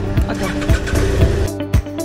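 Background music with a steady beat, about two beats a second, over sustained tones.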